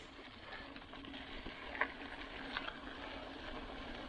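Faint, steady rolling noise of a Specialized Enduro Comp 29 mountain bike on a dirt track, with a few light clicks.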